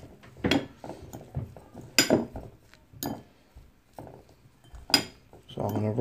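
Metal fork stirring and mashing turkey mince with breadcrumbs in a glass bowl: soft squelchy scraping with several sharp clinks of the fork against the glass.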